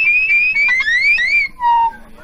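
Loud, shrill whistling: a high held note that wavers and breaks, slides upward twice in quick rising glides, then drops to a short lower note near the end.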